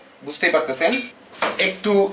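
Clinks of a sauce bottle handled against a ceramic plate, under a man's voice speaking.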